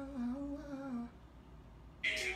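A single voice humming a short, wavering melody for about a second, then fading to faint room sound.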